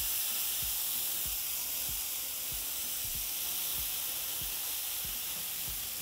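Shredded Oaxaca and cheddar cheese sizzling on a hot comal as more is sprinkled on, a steady, even hiss.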